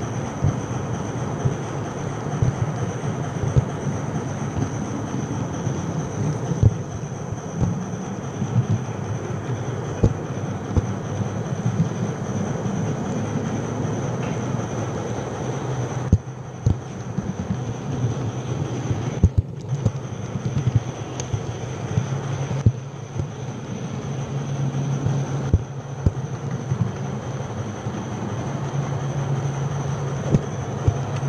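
H0-scale model train running along its track, heard from a camera riding on board: a steady low motor hum, stronger in the second half, with a thin high whine and many irregular clicks from the wheels on the rails.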